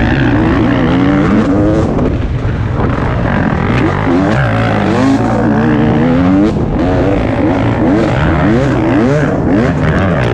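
2017 KTM 250 XC-W two-stroke enduro engine being ridden hard, revving up and falling back in pitch over and over.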